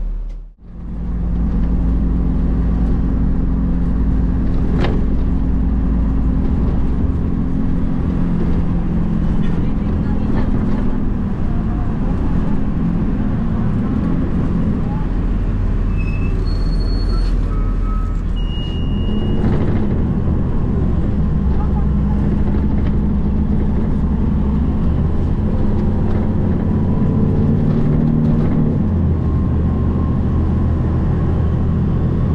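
TransJakarta city bus heard from inside the cabin while driving: a steady low engine hum whose pitch shifts up and down with speed, over road noise. A few short high beeps sound about halfway through.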